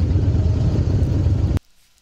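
Motorcycle engines idling with a steady low rumble, which cuts off abruptly about a second and a half in.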